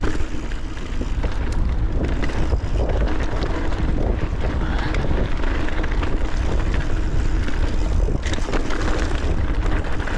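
Wind buffeting the camera microphone as a 2021 Santa Cruz 5010 full-suspension mountain bike rolls down a rocky dirt trail. Knobby tyres hiss over dirt and rock, and there is a running rattle of frequent sharp clicks and clatter from the bike.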